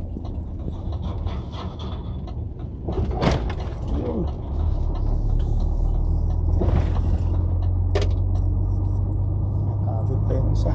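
Truck engine heard from inside the cab while driving, a steady low drone that grows louder about halfway through, with a few short sharp sounds over it.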